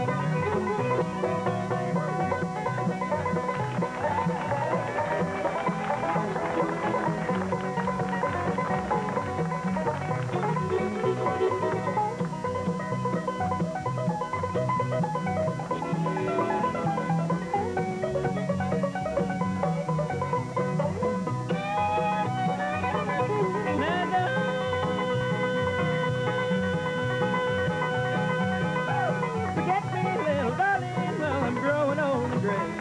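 Bluegrass band playing an instrumental break without singing: banjo, fiddle, mandolin, guitar and upright bass, with a long held note near the end.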